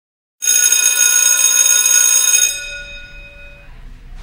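Electric school bell ringing, starting suddenly about half a second in and stopping about two seconds later, its tones dying away over the next second.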